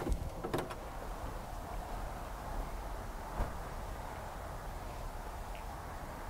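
Steady showroom room tone, with a few light clicks at the start and one dull thump about three and a half seconds in, from the Corvette's body being handled as its hood and door are worked.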